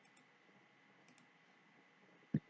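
Near silence: room tone, with a couple of very faint clicks, one just after the start and one about a second in.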